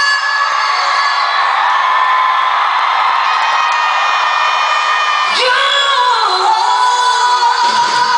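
Live pop concert audio: an amplified female voice holds long sung notes over the band, with a sliding swoop in pitch about five seconds in, and the crowd whooping.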